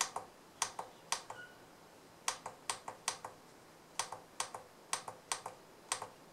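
Plastic keypad buttons on a handheld JDS2023 oscilloscope being pressed repeatedly: a series of sharp clicks, mostly in quick pairs, in irregular groups of two or three presses.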